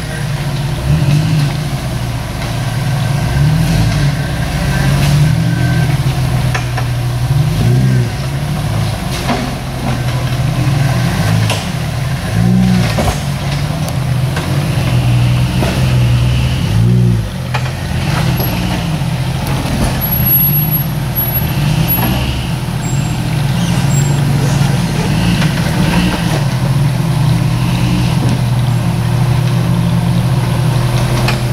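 Jeep Cherokee engine working at low speed as it crawls over boulders, revving up in short bursts every few seconds and dropping back between them, with an occasional knock.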